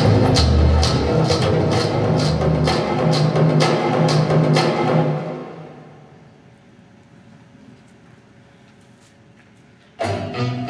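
Performance music with a steady percussive beat, fading out between about five and six seconds in and leaving a faint, quiet tail.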